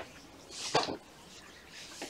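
A felt whiteboard eraser wiped across the board in one brief rubbing stroke about half a second in.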